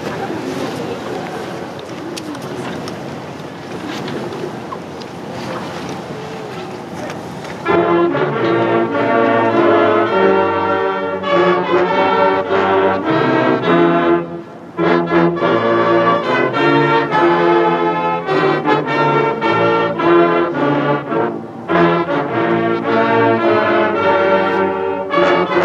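Outdoor wind and crowd noise on the microphone for about eight seconds, then a marching band's brass section starts playing the national anthem in slow, held chords of trombones, trumpets and sousaphones.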